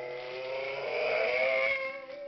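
Toy truck's electronic engine sound effect: a revving motor that rises in pitch and cuts off near the end.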